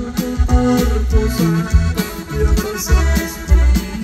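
Live norteño band playing an instrumental passage: an accordion carries the melody over bass and drums with a steady beat.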